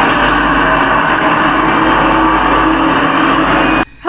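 A loud, steady rushing drone from a TV drama's soundtrack, starting and cutting off abruptly. It is the eerie noise that one character hears and others do not.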